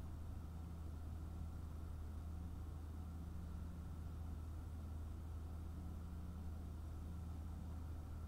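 Steady low hum of room tone, unchanging throughout, with no distinct events.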